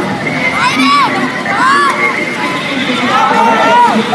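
Children shouting and cheering over a babble of voices, with several high-pitched yells that rise and fall.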